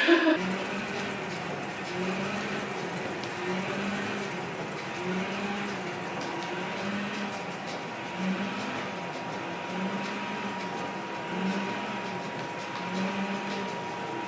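StairMaster stepmill running under a climber: a steady motor whine with a low rhythmic pulse about once a second as the steps cycle. A brief knock at the very start.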